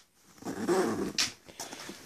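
A dog growling briefly, followed by a short rasp.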